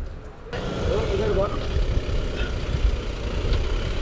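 A police van's engine idling with a steady low rumble, with voices talking over it. The sound changes abruptly about half a second in.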